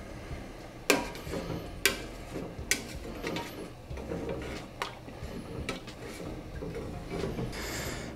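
A utensil stirring melted soy wax in a stainless steel pouring pitcher, scraping and clinking against the metal sides in irregular sharp taps about once a second.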